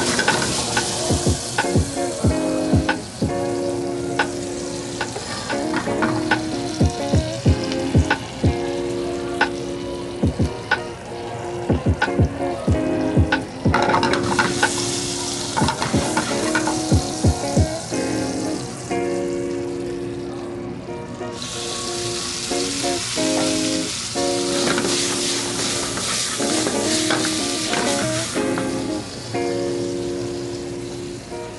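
Diced vegetables sizzling in butter in a stainless steel sauté pan, with frequent clinks and knocks of a utensil against the pan; the sizzle grows louder about halfway through.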